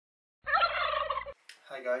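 A turkey gobbling once, a rapid fluttering call lasting about a second, starting and stopping abruptly. A man's voice begins just after it, near the end.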